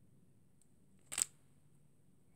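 A single brief crinkling click as a foil tea sachet is handled, about a second in. Otherwise quiet room tone.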